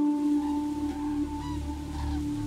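Background music: a held low drone tone with a fainter higher tone and a deep hum beneath, coming in abruptly.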